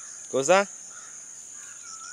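A man shouts one short command to a tusker elephant, falling in pitch, over a steady high-pitched drone of insects.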